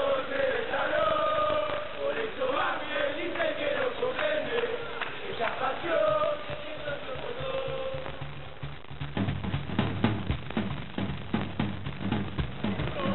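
Lanús football supporters chanting together in chorus. About nine seconds in, a drum beat with a low bass comes in over the chant.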